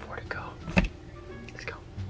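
A man whispering softly over background music, with one sharp click a little under a second in.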